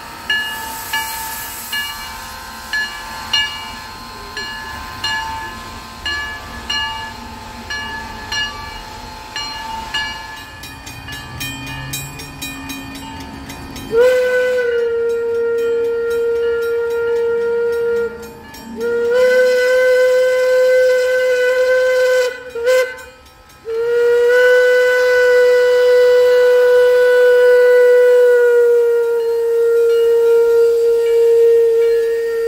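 A small steam locomotive's bell ringing in even strokes, about three every two seconds. Then its steam whistle blows long, long, short, long, the grade-crossing signal, with the last blast held for several seconds.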